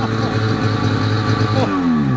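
Snowmobile engine held at high revs, its track spinning and throwing snow as the sled fails to climb a loading ramp onto a pickup. About one and a half seconds in, the engine note falls away as the throttle is let off.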